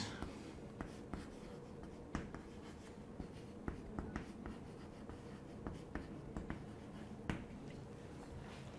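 Chalk writing on a chalkboard: a faint scatter of short taps and clicks as letters are written, ending near the end.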